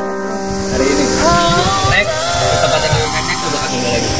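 Background music with sustained chords. A melodic line rises and falls in the middle.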